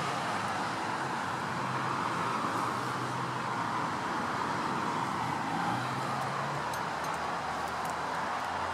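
Steady background noise with a faint low hum underneath and no distinct events.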